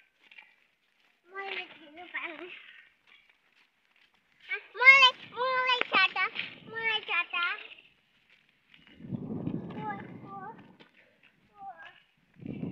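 People talking in short stretches, with a high-pitched child's voice loudest in the middle. No other distinct sound.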